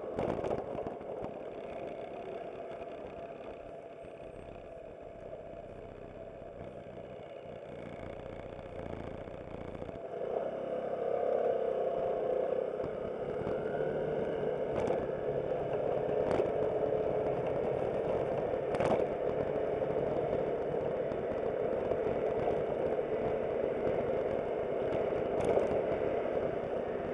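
Aprilia SportCity scooter's engine with road and wind noise while riding. It is quieter for the first ten seconds or so, then louder and steadier as the scooter picks up speed. A few sharp clicks stand out in the second half.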